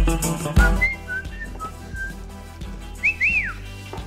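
Whistling over background music with a steady beat: a few short whistled notes, then two quick rising-and-falling whistle swoops about three seconds in.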